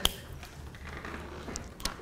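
Room tone with a steady low hum and a faint short click near the end.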